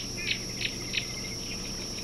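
Outdoor insect chorus: a continuous high-pitched insect trill, with short bird chirps about three times in the first second.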